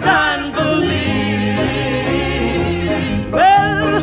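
Old-school gospel song: sung vocals over instrumental accompaniment, with a held, wavering note through the middle.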